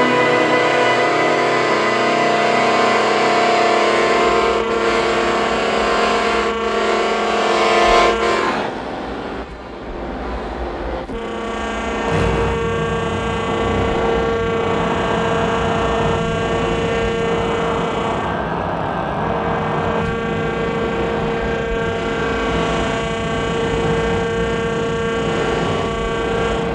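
Contemporary chamber music for alto saxophone, cello, accordion and electronics: held, droning tones over a low rumble swell to a peak about eight seconds in, then drop away. A new sustained drone builds from about twelve seconds and holds.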